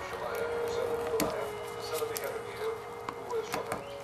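Aluminum foil inner seal being picked and torn off the mouth of a plastic quart motor-oil bottle: scattered small clicks and crinkles, over a faint steady hum.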